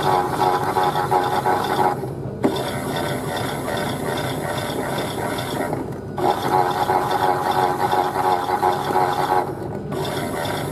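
Chad Valley Auto 2 toy washing machine's small motor and plastic gears turning the drum on its main wash, a ratcheting gear whir. It eases to a quieter steady run about two seconds in, comes back about six seconds in, and eases again near the end.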